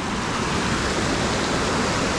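Small waterfall pouring over a rock ledge close by: a steady rush of water, a little quieter at the very start and then holding level.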